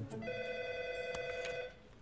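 Desk telephone ringing once: a warbling two-tone ring lasting about a second and a half, with a small click partway through.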